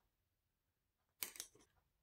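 Near silence, broken about a second and a quarter in by a brief cluster of faint clicks.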